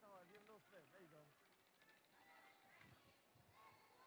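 Near silence, with faint distant voices in the first second or so.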